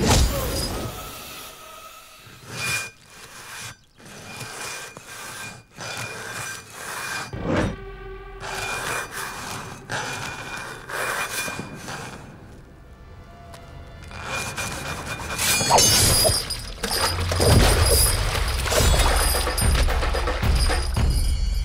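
Action-film soundtrack: a dramatic background score with a held high note, cut through by sharp impact and crash sound effects, the first and one of the loudest right at the start. From about the last four seconds it grows much louder with heavy drums.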